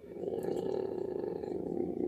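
A man's low, drawn-out creaky voice sound, like a hesitating 'eeh', lasting about two seconds.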